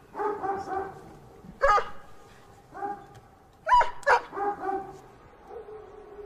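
A dog barking: a series of short calls, the loudest being a sharp bark about a third of the way in and two close together past the middle, with quieter yelps between them.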